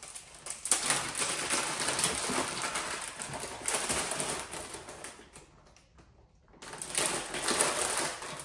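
Rapid clicking and rattling of small metal PEX clamp rings being picked out of their container by hand. It goes quiet for about a second past the middle, then the clicking starts again.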